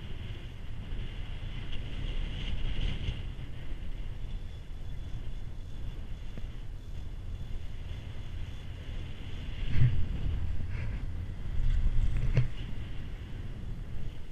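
A Poma four-seat chairlift in motion: steady low rumble with wind on the microphone. About ten seconds in, and again near the end, it grows louder with short clicks as the chair passes a lift tower and its haul-rope rollers.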